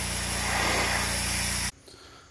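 Honda GCV160 single-cylinder engine running steadily, driving a Simpson pressure-washer pump, under the loud hiss of the high-pressure spray hitting wooden trailer deck boards. The sound cuts off suddenly near the end.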